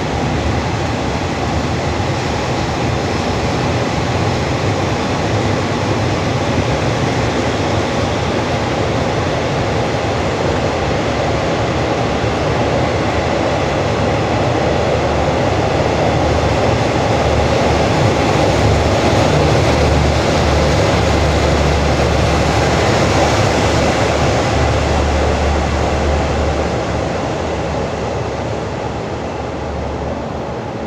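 A departing train's passenger coaches roll past on the rails in a steady rumble. It grows louder about halfway through, then fades over the last few seconds as the end of the train pulls away.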